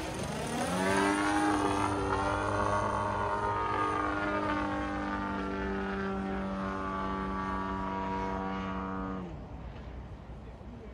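Radio-controlled aerobatic model airplane's motor and propeller run up in pitch within the first second, then hold a steady, many-toned drone for about eight seconds. Just after nine seconds the pitch and loudness drop sharply as the throttle is pulled back.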